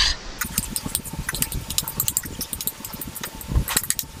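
Metal spoon and chopsticks clinking and scraping against a metal bowl as bibimbap is stirred, a quick irregular run of small clicks.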